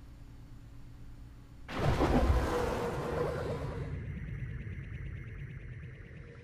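Outro logo sting: after a quiet hum, a sudden loud whoosh with a musical swell comes in about two seconds in and fades away slowly.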